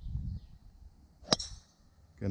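Golf club striking a teed golf ball on a tee shot: one sharp, clean crack about a second into the swing.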